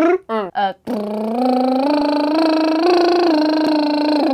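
Vocal warm-up: after a few short voiced syllables, a singer holds one long lip trill from about a second in, stepping slowly up in pitch in small steps and easing down slightly near the end.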